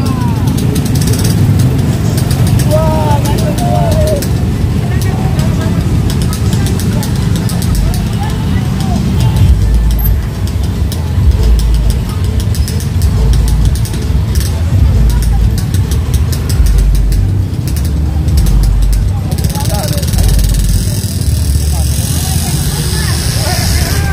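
Motorcycles and scooters riding slowly past in a convoy, their engines making a steady low rumble, with people's voices calling out over them in the first few seconds.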